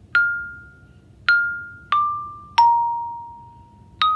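Xylophone struck with yarn mallets, playing four notes: the same high note twice, then two lower ones stepping down, the last left ringing. These are the F, D and B-flat of the exercise's opening phrase.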